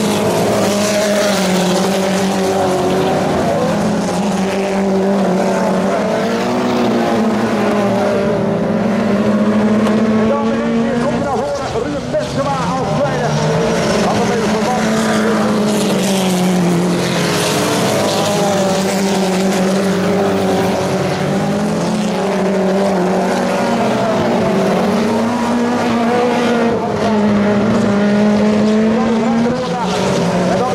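Engines of several standard-class autocross cars racing together on a dirt track, rising and falling in pitch as the drivers accelerate and lift through the corners.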